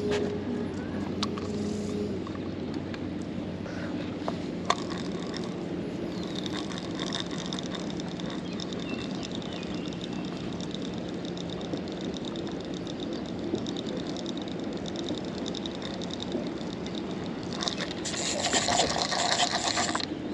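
Baitcasting reel being wound in, a fast, fine ticking whir, over a steady low hum. The reeling gets louder for the last two seconds as a fish is hooked.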